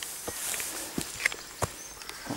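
Footsteps on dry leaf litter and twigs over sandy ground: a few irregular steps.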